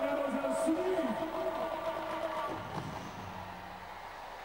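Indistinct voices in a stadium broadcast mix, with a held steady tone for the first two and a half seconds, then quieter.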